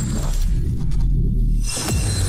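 Cinematic logo-reveal sound design over music: a deep steady bass, the higher sounds dropping away about halfway through, then a sharp shattering hit near the end.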